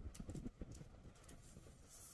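A person chewing a mouthful of chicken biryani close to the microphone: faint, irregular mouth clicks and smacks, a little louder in the first second.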